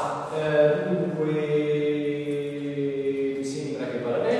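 A man's voice holding one long, nearly level vowel for about three and a half seconds, a drawn-out hesitation sound in speech, ending shortly before talking resumes.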